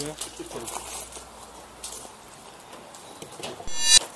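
Quiet outdoor ambience with faint voices and scattered small knocks, ending in a short loud buzzy sound effect with many stacked high tones just before the cut to a graphic.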